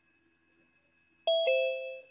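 A two-note electronic ding-dong chime, a higher note then a lower one, ringing out and fading: the video-call alert for a participant joining the meeting.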